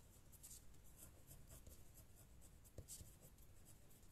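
Faint scratching of a ballpoint pen writing on paper in short, irregular strokes.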